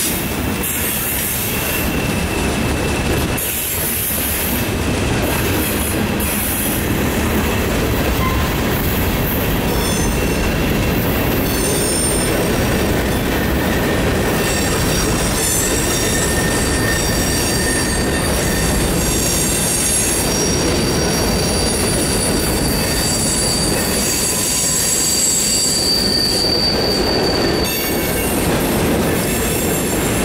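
Freight cars (gondolas, then covered hoppers) rolling past close by, a steady rumble of steel wheels on rail. High-pitched squealing from the wheels comes in about ten seconds in and rings on until near the end.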